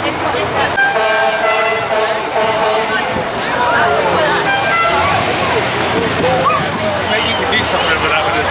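A vehicle horn tooting three or four times in a row about a second in, over crowd chatter. From about halfway, a car engine runs low and steady as a car passes close by.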